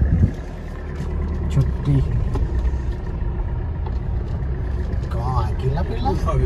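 Car running, heard from inside the cabin: a steady low rumble of engine and tyres as the car pulls away and drives on a dirt lane, after a brief loud thump right at the start.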